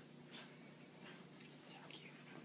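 Near silence: room tone with a few faint, short hissing sounds.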